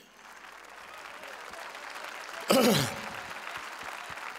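Audience applauding, starting soft and building steadily louder, with a brief voice call cutting through about two and a half seconds in.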